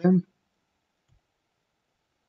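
The end of a spoken word, then near silence with one faint, short low tap about a second in.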